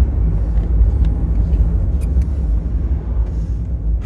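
Steady low rumble of a car's engine and tyres on the road, heard inside the moving car's cabin, with a couple of faint ticks.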